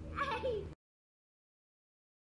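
A short, high-pitched vocal call with a falling, bending pitch, over faint outdoor background. Less than a second in, the audio cuts off abruptly into complete silence.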